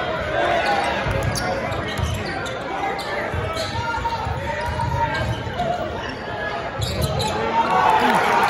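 A basketball being dribbled on a hardwood gym floor, with irregular thumping bounces under the talk of spectators in a large hall. The noise swells near the end.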